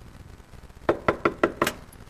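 About five quick knocks on wood in close succession, a knock as at a door.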